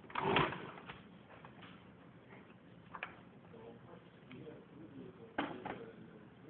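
Sliding and knocking of a part being pushed by hand on a small countertop machine. There is a louder clatter just after the start, a single click about three seconds in, and another clatter about five and a half seconds in.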